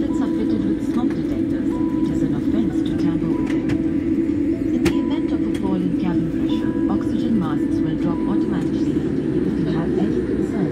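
Steady hum of a Boeing 787 airliner's engines and cabin while it moves along the taxiway, with people talking in the cabin.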